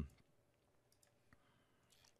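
Near silence with a few faint, short clicks of a computer mouse about a second in.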